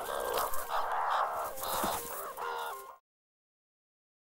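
Meerkats giving a run of short calls, about five in a row, that cut off abruptly about three seconds in, followed by silence.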